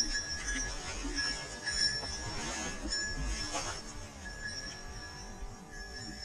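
A small bell ringing in short broken jingles, with brush rustling underfoot. The bell is the kind worn on a grouse dog's collar as it works the cover.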